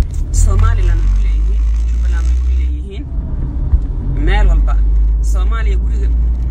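Steady low rumble of a car heard from inside the cabin, with a woman's voice over it at intervals.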